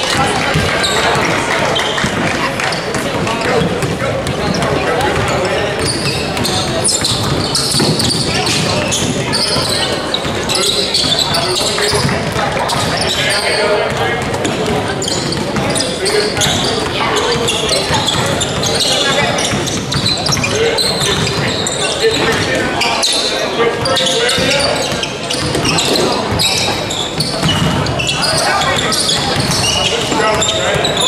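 A basketball game in a gym: a basketball dribbled on a hardwood floor and the busy sounds of play, under indistinct shouts and talk from players and onlookers that echo around the hall.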